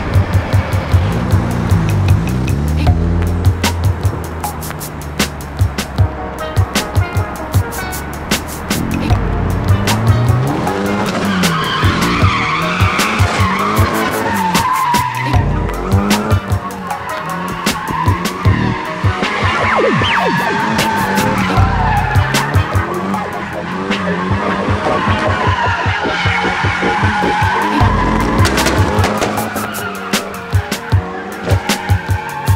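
Nissan 240SX (S13) with a turbocharged SR20DET engine revving up and down while drifting, its tyres squealing in long wavering howls from about twelve seconds in. Background music with a beat plays over it.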